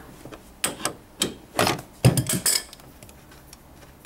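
An allen wrench and an adjustable wrench clink against the steel mounting bolt and bracket of a massage chair's backrest actuator as the bolt is worked loose. There are about half a dozen short metallic clinks and knocks in the first two and a half seconds, then only faint handling.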